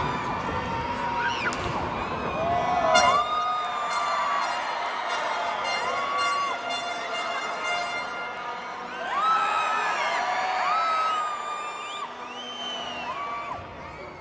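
Arena crowd at a lucha libre match cheering and shouting, with long drawn-out calls and whoops rising and falling over music. The first few seconds are a dense crowd roar; after that the sound thins out to separate drawn-out shouts.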